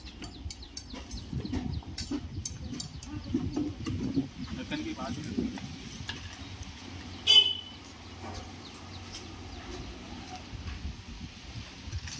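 Bystanders talking in the background, with scattered light taps and clicks. About seven seconds in comes one short, sharp clink with a brief ringing tone, the loudest sound here.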